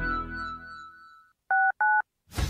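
Music fading out, then two short touch-tone telephone keypad beeps in quick succession, each a pair of tones, the second slightly different in pitch from the first.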